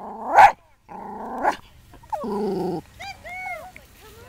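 Yorkshire terrier mix dog barking repeatedly: several drawn-out barks in the first three seconds, then shorter high yips.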